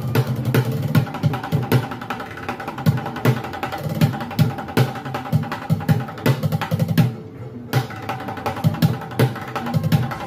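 Street bucket drumming: drumsticks beating a fast, dense rhythm on upturned plastic buckets, with deep thuds and sharp rim-like clicks, easing briefly about seven seconds in.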